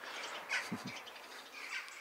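Crows cawing, a few short calls about half a second in and again near the end: they are scolding a person standing close to their feeder.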